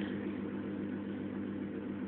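Small electric chord organ switched on, giving a steady low hum with a faint hiss.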